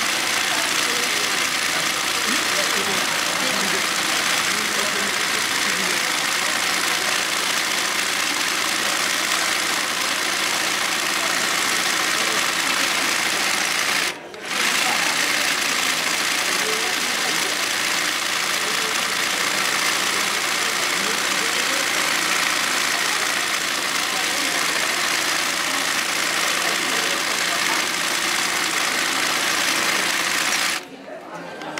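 Industrial zigzag sewing machine running fast and steadily as it stitches yokofuri (side-swing) embroidery, filling in a design. The sound drops out briefly about halfway through.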